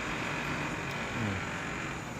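Steady background noise with a low rumble and hiss, and a faint distant voice briefly about a second in.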